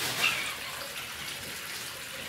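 Tap water running steadily in a thin stream from a mixer tap into a ceramic bathroom washbasin.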